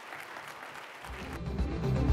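Audience applauding, then outro music with a heavy low end fading in about a second in and growing louder.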